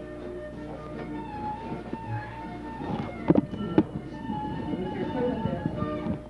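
Recorded music with a fiddle plays steadily, with two sharp knocks about half a second apart halfway through.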